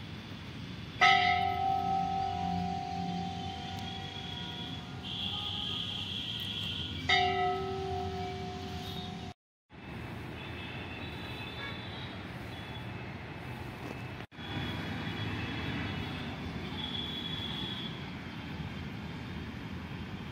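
A large metal temple bell struck twice, about six seconds apart. Each strike rings on with a steady, slowly fading tone; the second is cut off suddenly after about two seconds.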